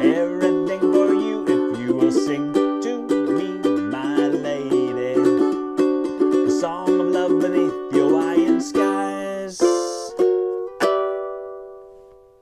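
Ukulele strummed quickly in a steady rhythm, then slowing to a few separate chords near the end, the last chord left to ring out and fade away.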